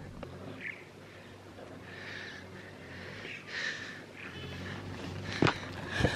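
Faint scuffs and rustles of a person climbing up out of a cramped passage, with one sharp knock about five and a half seconds in.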